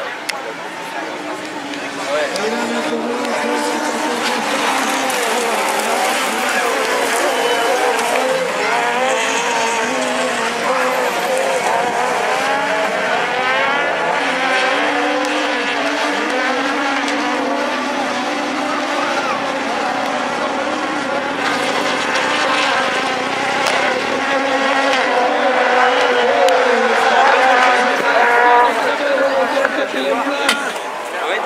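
Several rallycross cars racing on the circuit, their engines revving up and down through the gears over and over, some of them overlapping, getting louder near the end as the pack passes closer.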